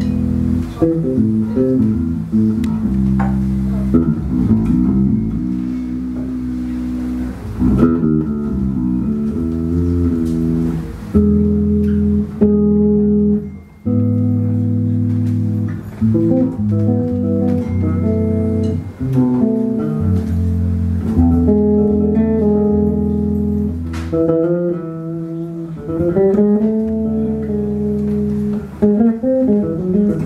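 Electric bass guitar playing a melodic line of held low notes and quick runs.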